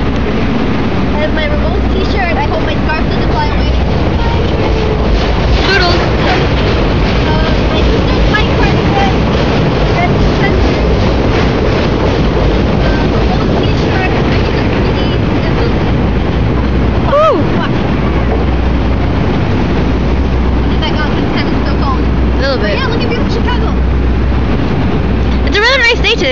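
Loud, steady outdoor noise with wind buffeting the phone's microphone in an uneven low rumble, and faint voices now and then.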